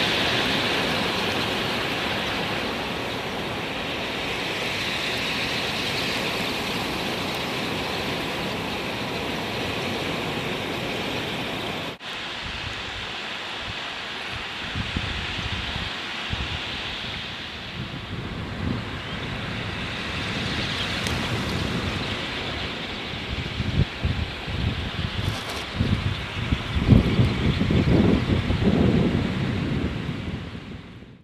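Dense, even rushing of a huge flock of shorebirds swirling past a sea kayak low over the water, wings and calls blending into one sound. It stops abruptly about twelve seconds in, giving way to wind buffeting the microphone in uneven gusts over choppy water, strongest near the end.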